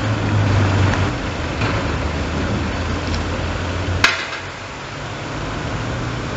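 Street sound with a motor vehicle's engine running as a low steady hum over a haze of outdoor noise, and a single sharp click about four seconds in.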